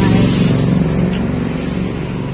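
A motor vehicle's engine running close by, a steady low hum.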